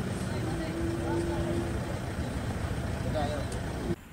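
Outdoor street sound: several people talking in the background over a low vehicle rumble, with a steady hum for about the first two seconds.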